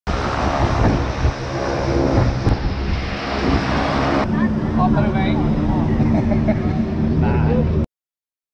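Propeller aircraft engine running close by, a loud steady noise with a low drone. After a cut about four seconds in comes the engine drone as heard inside the cabin, with people talking over it; the sound cuts off abruptly just before the end.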